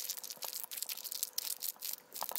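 Black plastic blind-bag wrapper crinkling and crackling in the hands, a dense, continuous run of small crackles as the fingers squeeze and pull at it to open it.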